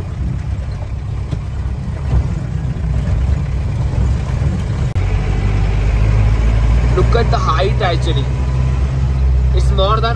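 A 1994 Mahindra jeep's engine running under load on a steep snowy climb, heard from inside the closed cab as a steady low drone. About five seconds in the drone becomes heavier and more even.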